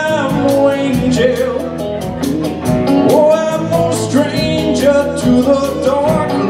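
Live blues-rock band playing an instrumental passage between sung verses: a lead guitar line with bent, gliding notes over a steady drumbeat, bass and keyboard.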